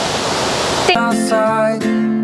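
Steady rushing of a waterfall in heavy flow for about the first second, then background music with guitar cuts in abruptly and carries on.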